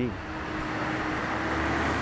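Road traffic crossing a highway bridge: a steady rush of tyre and engine noise that swells slightly toward the end as a car passes, over a faint steady hum.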